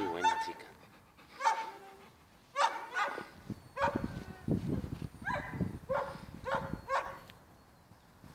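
A dog whimpering in short, high-pitched yips, about nine of them spread over several seconds with pauses in between.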